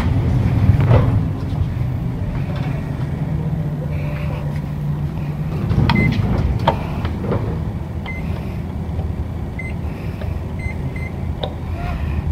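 Steady low machinery hum in an elevator lobby, with handling clicks and a sharper click about halfway through as a hall call button is pressed. Several short high beeps follow in the second half.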